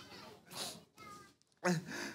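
A person wailing in short, high-pitched cries of distress, the last one sliding down in pitch.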